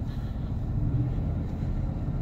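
Steady low rumble inside the cab of a 2018 GMC Sierra 1500 with the 6.2-litre L86 V8, cruising at about 1500 rpm under load while towing a travel trailer.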